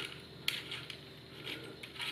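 Faint light clicks and scrapes of a small metal retainer ring being handled and fitted onto a soldering gun's barrel by hand, the sharpest click about half a second in.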